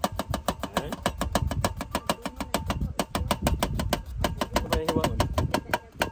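Kitchen knife rapidly chopping an onion on a cutting board: a fast, even run of knocks, about seven a second.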